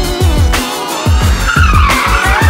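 A car's tyres squealing as it drifts on pavement, a high squeal that starts about one and a half seconds in and slides down in pitch. It is heard over electronic music with a heavy, steady beat.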